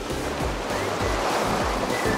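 Sea waves breaking and washing over shoreline rocks, the surf swelling and fading around the middle, over background music.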